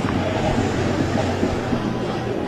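Motorcade vehicles driving past, a steady engine and road noise.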